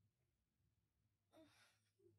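Near silence, with one brief faint exhaled breath about one and a half seconds in.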